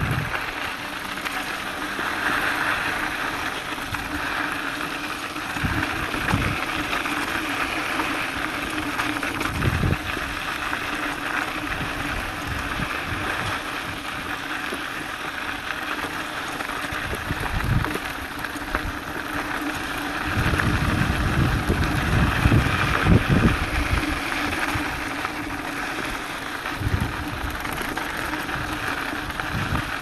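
Mountain bike rolling downhill on a dirt and gravel trail: continuous tyre-on-dirt and frame rattle noise picked up through the handlebar mount, with wind buffeting the microphone in low gusts, strongest about twenty seconds in.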